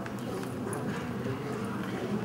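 Room ambience in a large hall: a steady low hum with a few scattered small clicks and knocks, and faint murmuring voices.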